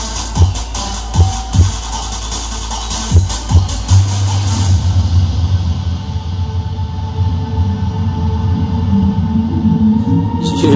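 Electronic trap track played loud through a Sony GPX88 hi-fi system, with heavy bass. Punchy kick-drum hits come in the first four seconds, then the beat gives way to a sustained deep bass as the top end is cut off, like a filtered breakdown.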